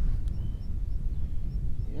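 Wind buffeting the microphone outdoors, a steady low rumble, with a few faint short high chirps over it.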